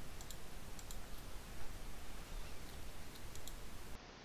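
A few scattered computer mouse clicks over steady low background noise.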